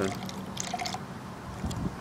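Soapy hydrogen peroxide poured from a plastic cup into a plastic tumbler of potassium iodide solution, the liquid running in with scattered small splashes.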